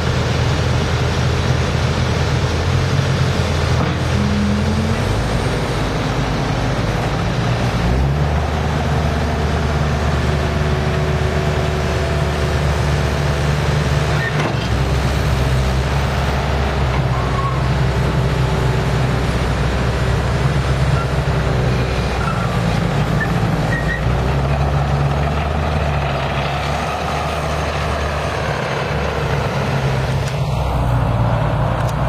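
Caterpillar 289C2 compact track loader's diesel engine running after start-up. Its engine note steps up and down several times as the loader arms are raised and the machine drives off on its tracks.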